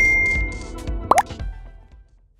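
Electronic logo sting: a sharp hit at the start with a high ringing tone, then a short swooping blip about a second in, the whole fading away toward the end.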